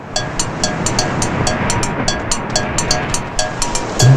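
Film soundtrack: a steady rushing noise with rhythmic ticking, about five ticks a second, and short repeated notes, the instrumental lead-in to a song.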